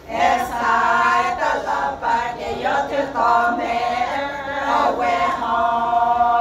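A group of women singing a folk song together in unison, several voices on one line. The phrase starts just after a short breath at the opening and closes on a long held note near the end.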